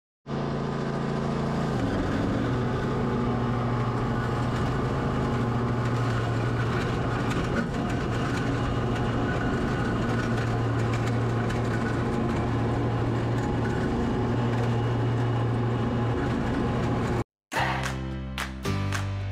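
Stand-on ride mower's engine running steadily, its note dropping slightly about two seconds in. It cuts off abruptly near the end, where an intro tune with strummed guitar begins.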